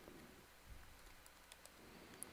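Faint computer keyboard typing, a few soft keystrokes against near silence.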